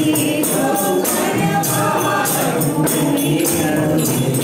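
A group singing a Hindu devotional bhajan together, accompanied by a hand-held tambourine beaten in a steady rhythm with jingles ringing.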